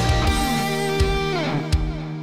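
Electric guitar solo: the heavy low passage gives way to held notes that slide down in pitch about a second and a half in, then ring on and fade. Two sharp hits fall about a second in and near the end.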